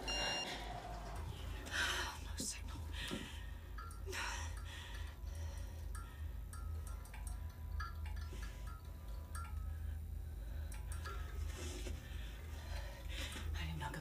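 A low, steady drone runs underneath scattered small clicks and rustles, with faint whispering.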